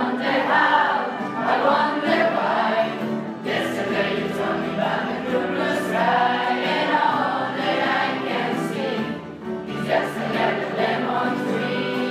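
A large mixed choir of teenage students singing together on stage; the voices come in at once at the start and carry on without a break.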